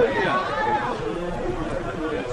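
Several voices talking over one another: spectators chattering at a pitchside.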